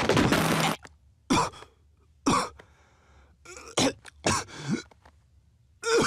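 A girl's sobbing, voiced for a cartoon: a long choked burst at the start, then short catching sobs at spaced intervals with quiet breaks between. A word of speech follows near the end.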